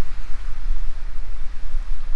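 Wind buffeting the microphone: a loud, uneven low rumble with a faint hiss above it.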